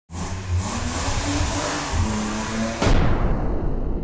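Intro logo sting: an engine-revving sound effect mixed with music, broken by a sudden loud hit just under three seconds in that then fades away.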